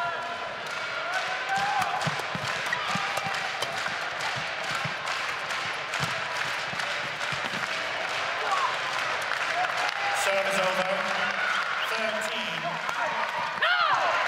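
Badminton rally: rackets striking the shuttlecock and players' shoes squeaking and thudding on the court, over the murmur of an arena crowd. A louder crowd reaction comes near the end.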